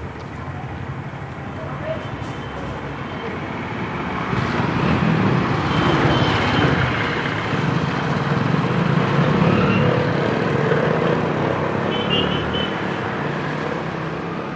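Street traffic: the engines of motorbikes and scooters running and passing, getting louder about four seconds in, with voices in the background.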